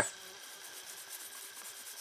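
Fingers rubbing wax leather balm into a scuffed leather belt: a faint, soft rubbing.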